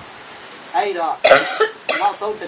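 A person coughs loudly and abruptly about a second in, mixed with voices talking. A second, shorter cough or throat-clear comes near the end.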